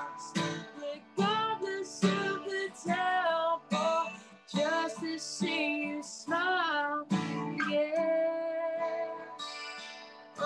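A woman singing a country song, accompanying herself on a strummed acoustic guitar, with long held and sliding sung notes.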